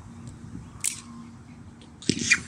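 A slingshot being shot: one sharp snap of the rubber bands and pouch on release, a little under a second in.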